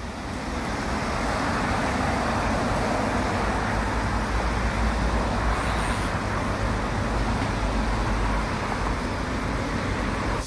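Steady road traffic noise, an even wash with a low rumble and no distinct events.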